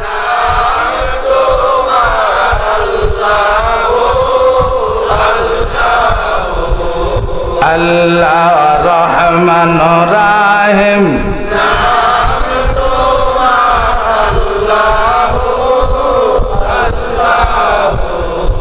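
A man's voice chanting the names of Allah in a long, drawn-out devotional melody, with held and wavering notes, amplified through a microphone and PA. A low steady tone sounds under the voice for about three seconds midway.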